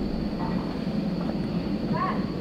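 A steady low rumble, with a faint short ringing clink of a glass mug being handled near the end.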